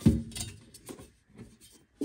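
A dull knock and then several faint, scattered clicks of a nonstick crisper plate being handled in a plastic air fryer basket.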